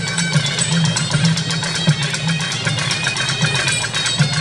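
Music for a Karagam (Karakattam) folk dance, with a fast, busy rhythm of closely spaced strokes running without a break.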